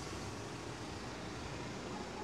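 Steady low hiss of room noise with no distinct events.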